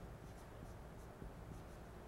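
Faint, short strokes of a dry-erase marker drawing small circles on a whiteboard.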